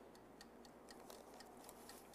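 Near silence: a few faint, irregular light clicks over a low room hum.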